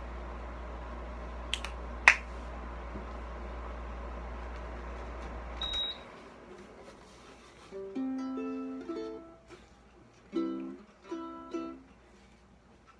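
A steady low hum with two sharp knocks, which cuts out with a short high beep about six seconds in. Then a ukulele is strummed in three short bursts of jazz chords near the end.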